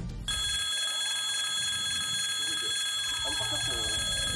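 Railway pedestrian crossing alarm bell ringing steadily, warning that a train is approaching. A lower tone falling in pitch joins in over the last second or so.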